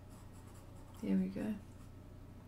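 Pastel pencil stroking lightly on Pastelmat paper, a faint scratching. About a second in, a brief vocal sound of about half a second, the loudest thing heard.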